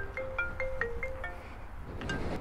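Mobile phone ringtone: a quick marimba-like tune of short notes that plays for about a second and a half, then stops, ahead of a call being answered.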